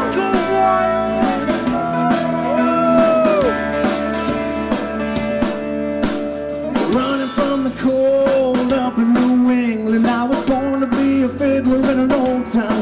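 Rock band song: a man singing over guitar and drum kit, with a steady beat.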